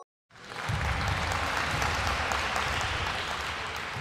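Recorded applause sound effect marking the correct answer, starting about a third of a second in after a brief silence and running on steadily.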